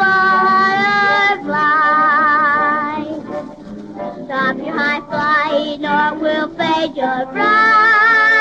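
A young girl singing a solo song from a 1930 Vitaphone sound-disc recording, holding notes with vibrato. Shorter notes come in the middle and a long held note near the end.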